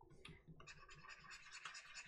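Faint scratching of a pen stylus dragged across a graphics tablet in a run of quick short strokes, starting about half a second in.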